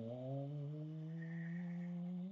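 A man's voice drawing out one long, low hum, its pitch rising slightly, a held-out "and…" as he pauses mid-sentence.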